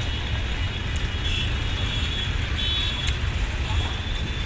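Steady outdoor background noise: a low rumble with a light hiss, like distant road traffic, with two faint short high tones partway through.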